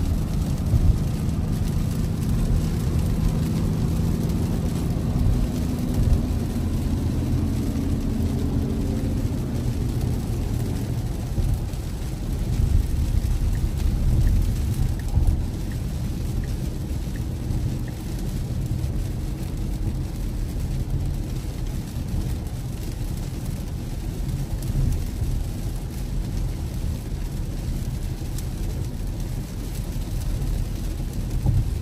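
Steady low road rumble and wet-tyre noise heard inside a Tesla's cabin at highway speed in heavy rain, with rain on the car. A low hum sits over it for the first ten seconds or so, then fades.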